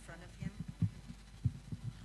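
Microphone handling noise: irregular low thumps and knocks, several a second, as a microphone at a lectern is fitted and adjusted. Faint talk is heard near the start.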